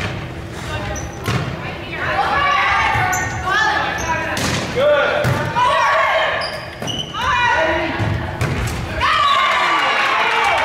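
A volleyball rally in a gym: sharp smacks of the ball off players' hands and arms, a sharp one at the very start and more every second or two, under players' and spectators' shouts and cheers that echo in the hall and swell near the end.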